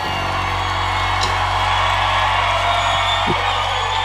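A rock band's sustained closing chord ringing out while a concert crowd cheers and applauds.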